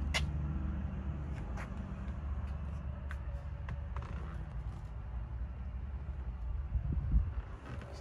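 Heavy diesel truck engine idling with a steady low rumble, a few light clicks and a brief low thump about seven seconds in.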